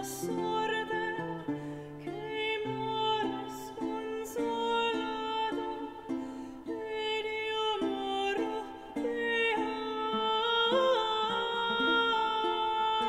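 Live Renaissance chamber music: a woman singing a melody with lute and viol accompaniment.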